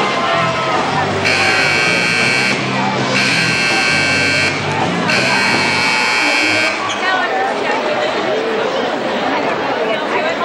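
Basketball gym scoreboard buzzer sounding three long blasts, each about a second and a half, with short gaps between them.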